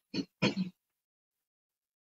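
A woman clearing her throat: two short rough bursts in quick succession.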